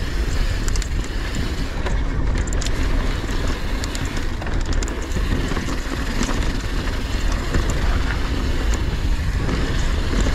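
Mountain bike rolling fast down a dirt trail: steady rumble of the tyres on hardpack and wind rush on the action camera's microphone, with scattered small clicks and rattles from the bike.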